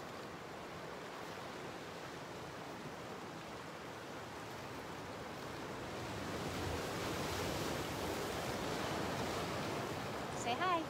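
Ocean surf breaking on a beach: a steady wash of waves that swells louder about six seconds in.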